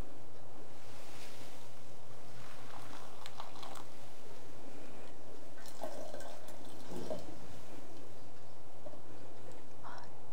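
Hot water ladled from an iron tea kettle with a bamboo ladle: a soft pour about a second in, then drips and a second small pour with light clicks of the ladle near the kettle about six to seven seconds in.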